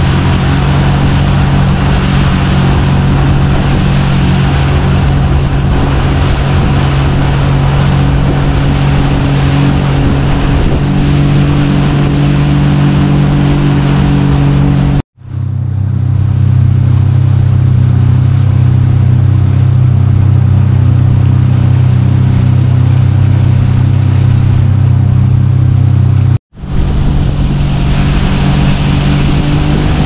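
Sea-Doo Switch pontoon boat's engine running steadily at cruising speed, a constant low drone with wind and water rushing over it. The sound drops out abruptly twice, about halfway and near the end, and in between the drone sits lower with less hiss.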